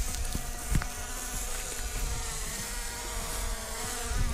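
Quadcopter drone's propellers buzzing steadily in flight just after take-off, weighed down by a smartphone tied to it.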